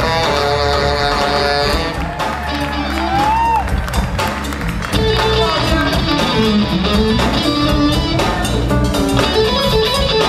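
Live funk band playing, with bass and drums: a tenor saxophone plays at the start, and from about five seconds in an electric guitar takes the lead with a repeated riff.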